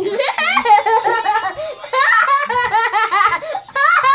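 Young girls laughing loudly and high-pitched, in two long fits of laughter with a brief break in between.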